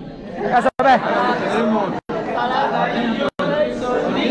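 Several voices talking over one another in a large hall: audience chatter. The audio cuts out briefly three times.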